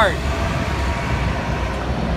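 Steady street traffic noise with a low rumble.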